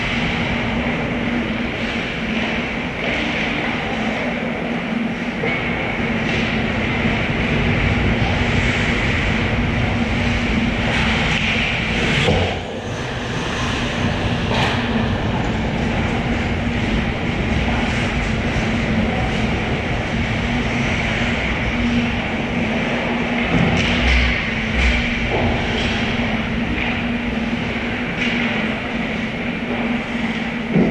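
Ice hockey being played: a steady rumble of skates on the ice under a low, constant rink hum, with a few sharp knocks of sticks and puck, the clearest about twelve seconds in.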